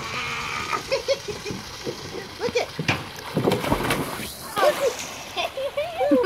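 Water splashing in a swimming pool, with several sharp splashes from about two and a half to four seconds in, over a steady rush of water, while children's voices call out in short bursts.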